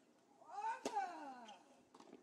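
A tennis serve: a sharp crack of racquet on ball just under a second in, wrapped in the server's loud cry that rises and then falls in pitch. A smaller click follows near the end.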